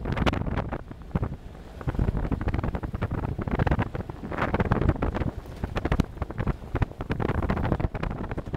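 A 4x4 driving over a rough, overgrown dirt track with the windows open: low rumble from the engine and tyres, wind buffeting the microphone, and frequent short knocks and rattles as the vehicle jolts over bumps. It eases briefly about a second in, then picks up again.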